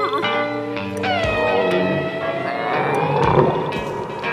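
The sick cartoon dog whining in one long, drawn-out call that dips and then slowly climbs in pitch, over the cartoon's orchestral score.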